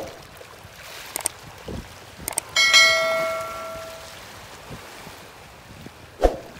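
Subscribe-button animation sound effect: a few sharp clicks, then a bell chime about two and a half seconds in that rings out and fades over about a second and a half.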